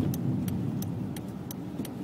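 Small 999cc car engine running with road noise, heard as a low steady rumble from inside the cabin while driving. A light tick repeats about three times a second.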